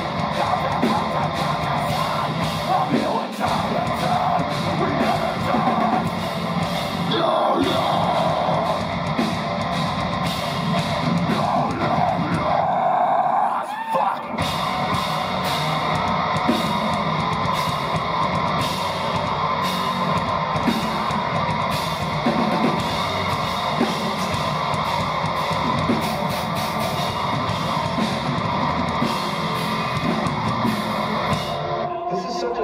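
Metalcore band playing live and loud, heard from the crowd: heavy distorted guitars, pounding drums and screamed vocals. About halfway through, the drums and bass stop for a second or so over a bending guitar note, then the full band comes back in.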